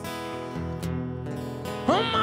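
Acoustic guitar strummed, its chords ringing on between sung lines. A man's singing voice comes back in near the end, sliding up into a note.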